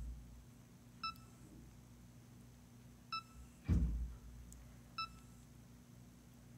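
Short electronic beeps from a Blaze EZ handheld DAISY book player, one about every two seconds, three in all, while it waits for the book list from the online library to load. A low thump comes about midway.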